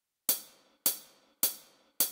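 A drum count-in: sharp hi-hat ticks evenly spaced a little under two a second, three of them and the start of a fourth near the end, each dying away quickly, leading into the karaoke backing track.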